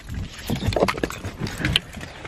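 Irregular knocks and rustling from a handheld camera being carried and moved about.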